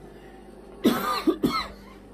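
A loud, raspy cough-like sound in two bursts, the first about half a second long and the second shorter, coming about a second in.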